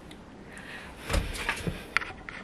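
Room tone, then handling noise as someone moves right up against the camera: a few soft thumps and rustles from about a second in, and a sharp click near the end.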